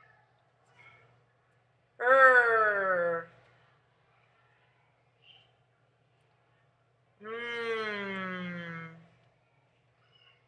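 A woman's voice drawing out two long phonics letter sounds, each falling in pitch: a growled "rrr" about two seconds in and a hummed "mmm" about seven seconds in.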